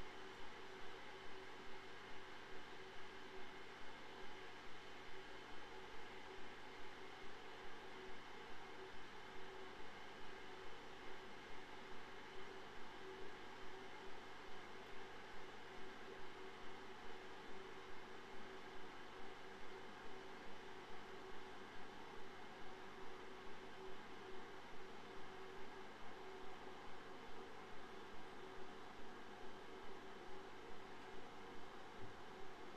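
Steady background hiss of an empty room with a faint hum that pulses evenly about twice a second.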